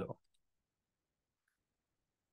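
A few faint computer mouse clicks just after the start, with a faint blip about a second and a half in; otherwise near silence.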